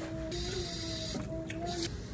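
A woman humming a long, steady closed-mouth "mmm" of enjoyment while tasting fresh pineapple, with a short break a little after a second in. A brief hiss-like rustle comes about half a second in.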